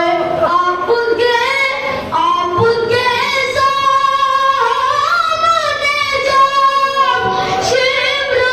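A boy's solo voice, unaccompanied, chanting devotional elegiac verse (pesh-khwani) in long held, slowly bending melodic lines.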